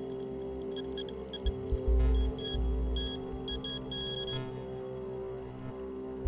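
A Radex handheld radiation meter beeps in short, high bursts at irregular intervals, sometimes in quick clusters, as it registers radiation. The beeps stop a little after four seconds in. Under them runs a steady music drone, and a low rumble swells about two seconds in.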